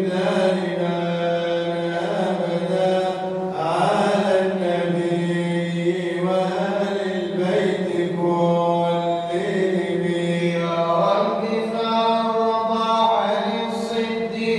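A man chanting an Arabic madih, a devotional praise poem to the Prophet, in long held, wavering melismatic notes.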